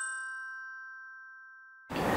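A bell-like chime sound effect ringing out: a few steady high tones fading slowly, then cutting off just before the end.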